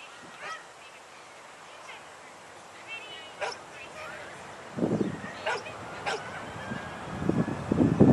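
A dog barking in the distance: short sharp barks every second or two. A few louder low rumbles come about five seconds in and again near the end.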